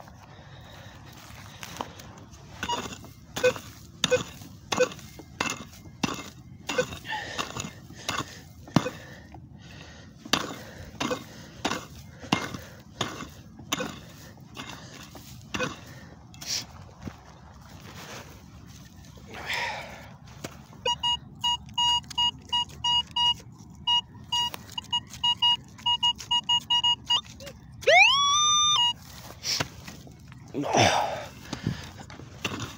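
A pick-mattock striking into dry field soil, one blow about every second, digging out a detector target. Then a metal detector gives a run of rapid, evenly pulsed beeps for several seconds, followed by a brief, loud rising electronic tone.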